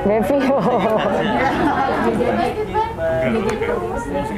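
Several people talking over one another: steady overlapping chatter of a seated group in a large room.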